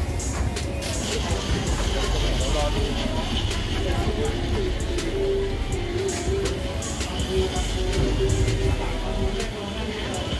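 Busy outdoor market ambience: indistinct voices and music playing, over a steady low rumble, with scattered light clicks.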